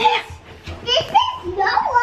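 A woman's and a young child's voices talking and calling out indistinctly, with a couple of light knocks.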